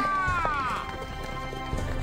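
A horse neighs in one long call that falls in pitch, then hooves clip-clop as a horse-drawn carriage sets off, over background music.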